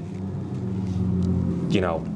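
A steady low drone with a few even pitched tones runs under a pause in the talk.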